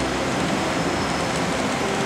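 A steady, even rushing noise with no voice.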